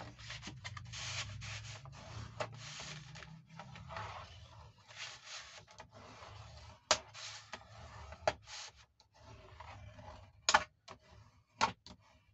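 A bone folder rubbing firmly along a scored fold in thick 280 gsm kraft cardstock to burnish the crease. It makes repeated scraping strokes, with a few sharp clicks and taps as the card is handled, mostly near the end.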